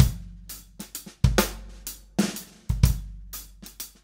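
Drum kit playing a swung rock waltz, with ghost strokes on the snare and a broken triplet in the bass drum leading into the backbeat. Deep, ringing strokes fall about every second and a half.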